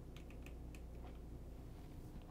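A few faint, light clicks and crackles in the first second or so, over a low steady hum: wood chip bedding crackling as a red-tailed boa shifts its coils on it.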